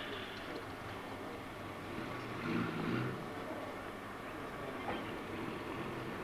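Steady low rumble of a vehicle engine running, with a brief louder stretch about halfway through.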